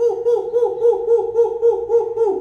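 A man's voice chanting "who" over and over in a rapid, owl-like hoot, about five a second, each syllable rising and falling in pitch.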